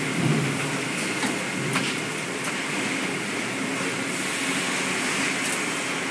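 Sawmill log-handling machinery running steadily, with a few light clanks.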